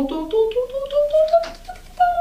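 A woman singing a slow, step-by-step rising run of notes, imitating walking up a piano keyboard, with a row of quick light clicks along with it.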